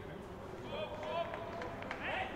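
Players' shouts and calls on a football pitch with no crowd noise behind them, growing clearer about a second in, with a couple of sharp knocks near the end.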